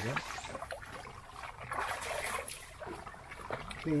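Hands rummaging through a fabric bag for a bandage: scattered rustles and small clicks, with water lapping softly.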